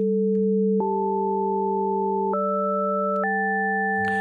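Two sine-wave oscillators in Bitwig's The Grid sound together as pure electronic tones. One holds a steady low pitch while the other's frequency ratio is stepped up three times, about a second apart, jumping in even harmonic intervals until it sits two octaves above the base oscillator at a 4:1 ratio. Each jump has a faint click.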